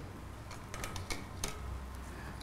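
A few light clicks and taps, bunched about a second in, from small plastic spice tubs being handled on a stainless-steel counter, over a faint steady low hum.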